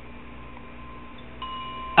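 Faint ringing chime tones held steady under a low background hum, with a fresh higher tone joining about one and a half seconds in.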